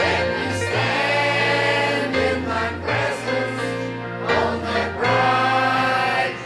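Church choir singing together with a man leading in front, over instrumental accompaniment with held low bass notes that change every second or so.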